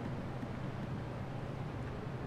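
Quiet, steady room tone: a low hum under a faint even hiss, with no distinct events.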